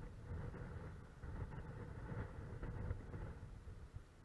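Steady low rumble of wind and sea surf.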